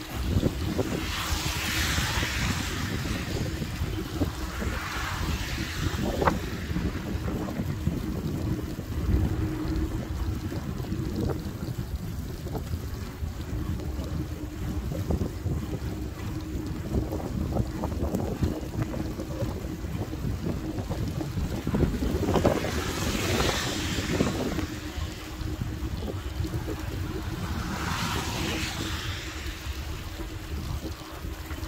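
Wind buffeting the microphone and tyre noise from an e-bike riding along a wet path, with a steady low hum underneath. Louder swells of hiss lasting a couple of seconds come about two seconds in, around five seconds, around twenty-three seconds and near the end.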